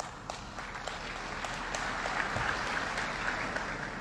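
Audience applauding: many hands clapping together in an even patter that swells a little over the first couple of seconds and then holds steady.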